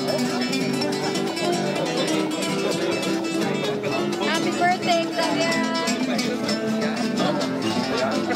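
Acoustic guitar music, plucked, with people's voices underneath.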